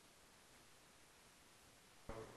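Near silence: faint, steady room tone with a light hiss.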